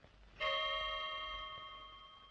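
A clock's chime striking once, about half a second in: a single bell-like strike that rings on and slowly fades. A single strike is how a striking clock marks the half hour, here the half past one set for lunch.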